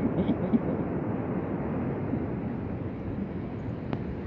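Steady rushing outdoor background noise with no distinct events.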